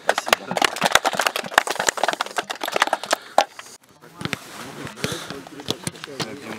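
A small group of people clapping their hands, a quick run of sharp irregular claps that stops after about three and a half seconds; men's voices follow.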